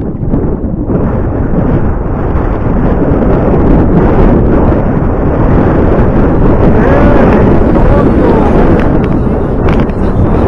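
Wind buffeting an action camera's microphone: a loud, dense noise that swells about a second in and stays strong.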